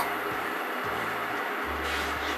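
Steam iron hissing steadily as it is pressed across a shirt cuff, with a low hum joining near the end.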